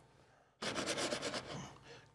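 A gloved hand working in a dish of dry graham cracker crumbs: a dry rubbing, scraping rustle that starts about half a second in and lasts roughly a second and a half.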